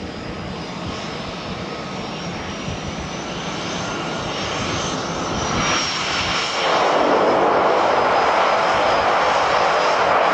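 The twin PT6A turboprop engines of a de Havilland Canada DHC-6 Twin Otter running as it taxis, with a high turbine whine over the propeller noise. The sound grows louder and jumps sharply about six and a half seconds in as the aircraft turns nose-on.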